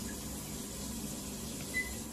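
Electronic bidet toilet seat running, with a steady hiss of spraying water. Near the end a short electronic beep sounds as a button on its control panel is pressed.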